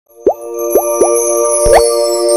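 Animated logo intro sting: three quick rising bloop pops over a held synth chord, then a longer upward sweep near the end as the chord rings on.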